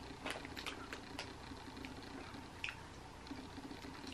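Quiet chewing of peach jelly beans, with a few faint scattered clicks.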